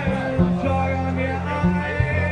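Upright double bass plucked in long, held low notes under a steel-string acoustic guitar, a live acoustic duo playing a passage without vocals.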